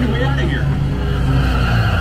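Loud dark-ride soundtrack: a deep, steady rumble of sound effects with voices briefly over it near the start.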